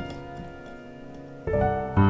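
Digital piano: a Db7(13, 9) chord dies away, then a C major chord with added 9th, #11th and 13th is struck about one and a half seconds in. The Db7 is the tritone substitute for G7, resolving down a half step to the C tonic.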